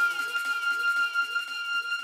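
Electronic dance music from a DJ set with the bass cut out: a held high synth note over short falling synth sweeps repeating several times a second.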